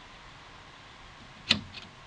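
A single sharp click about one and a half seconds in, then a fainter tick, from the rotary mode selector switch on a 3M Dynatel 573A cable locator transmitter being turned by hand.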